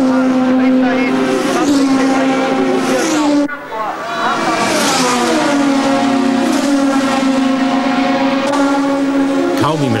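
1975 Formula One cars' racing engines at high revs as the cars pass through a corner on the opening lap. The engine notes rise and fall with passing and gear changes. The sound breaks off briefly about three and a half seconds in, then goes on with another group of cars.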